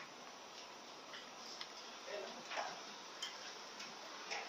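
Faint room tone in a quiet hall, with a few soft, irregularly spaced clicks and a brief faint murmur of a voice a little past the middle.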